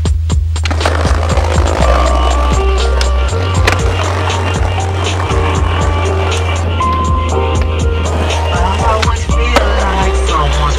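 Backing music with a steady bass line, over a skateboard rolling on pavement with irregular clacks of the board.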